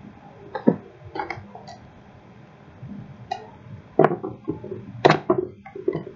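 Irregular clicks and knocks from a metal belt buckle and leather belt being handled and worked in the hands, busier in the second half.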